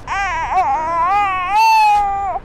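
A baby crying: one long, wavering wail that grows louder near the end.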